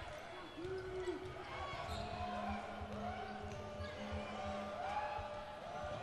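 Live court sound in a gym: a basketball dribbling on the hardwood floor with occasional faint thuds, under a low murmur of players' voices and the crowd.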